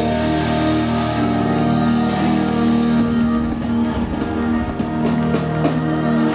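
Live rock band playing without vocals: electric guitars hold a steady chord over the drums, with scattered drum hits.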